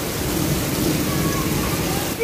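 Heavy rain falling steadily on paving.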